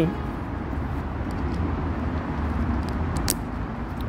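Motorcycle helmet chin-strap ratchet buckle being fastened, giving a sharp snapping click about three seconds in, with a few fainter clicks before it, over steady outdoor background noise.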